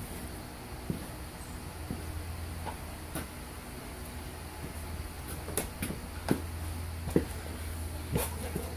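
Steady low background hum with about half a dozen faint, scattered clicks and knocks.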